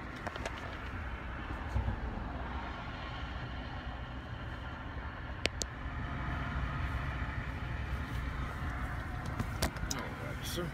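Roadside traffic noise: a steady low rumble of vehicles that swells slightly about six seconds in, with a few sharp clicks.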